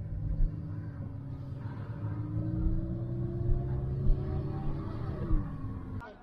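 Car engine and road rumble heard from inside the cabin while driving slowly; the engine note climbs gradually, then drops about five seconds in.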